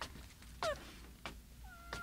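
A cat meowing: a short falling meow just over half a second in, then a longer meow that sinks slightly in pitch near the end, with a few faint clicks between.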